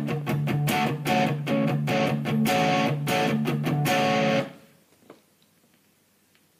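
Electric guitar played through a Boss GT-100 amp effects processor: strummed chords in a quick, repeated rhythm that stop suddenly about four and a half seconds in, followed by a faint click.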